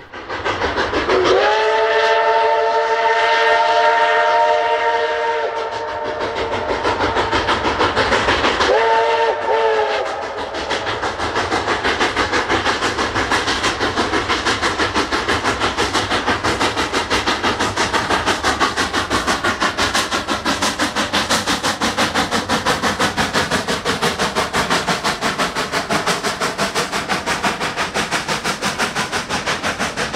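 Denver & Rio Grande Western K-36 class 2-8-2 narrow-gauge steam locomotive 487 sounds its chime steam whistle: one long blast, then a shorter one. It then passes with rapid, steady exhaust beats as it works upgrade, and its passenger cars roll by near the end.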